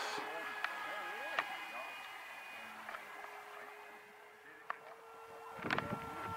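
Electric motor and propeller of a radio-controlled foam-board model airplane, a faint steady whine fading as the plane flies away. A few light clicks, and louder voices and handling noise in the last half second.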